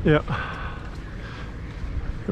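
Wind rumbling on the microphone on an open boat, with a faint steady whine for about a second after a brief spoken "yep".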